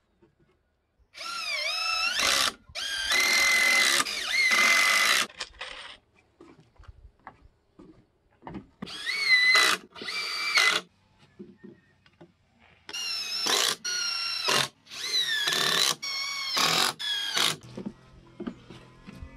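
Cordless drill driving screws into pallet-wood boards. It runs in short bursts of one to two seconds, about ten in all in three groups, and the motor's whine dips and rises in pitch as it slows under load and speeds up again.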